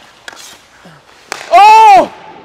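A hockey stick blade tapping the puck on the ice a few times, then a sharp crack of stick on puck about a second and a half in. It is followed at once by a loud, drawn-out shout of "oh".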